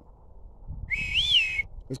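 A short whistle, about a second long, to call on the search dogs. It holds one pitch with a quick rise and fall in the middle, over low rustling.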